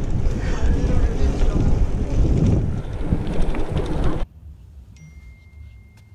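Wind buffeting an action camera's microphone while riding a bicycle down a street, a loud steady rush with low rumble. It cuts off abruptly a little after four seconds in to a quiet vehicle cab, where a faint steady high tone starts about a second later.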